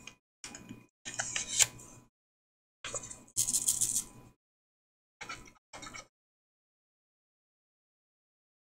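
Paper rustling and crinkling in short bursts as cut paper pieces are handled, loudest about three and a half seconds in, stopping about six seconds in.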